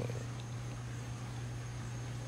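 A steady low hum under faint background noise, with no other event.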